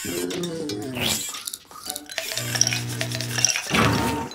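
Cartoon robot sound effects at a kitchen counter of glasses: a descending electronic warble, then a steady buzzing hum from about two seconds in with glassy clinks over it, and another gliding tone near the end.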